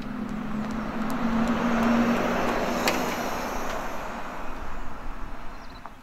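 BMW iX xDrive50 electric SUV driving past with no engine sound: tyre and road noise swells to a peak about two seconds in and then fades, over a steady low hum in the first half. A single sharp click sounds near the three-second mark.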